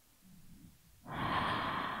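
A person's long breath blown out close to the microphone, starting about halfway through and fading slowly, after a fainter softer breath sound just before.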